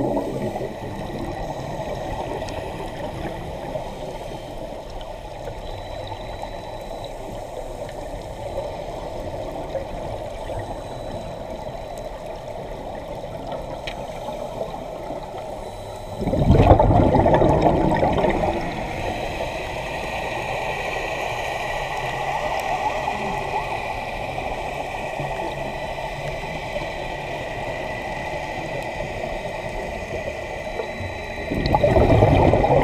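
Muffled underwater noise from a camera held by a scuba diver. About halfway through, a louder two-second rush of exhaled bubbles comes from the diver's regulator.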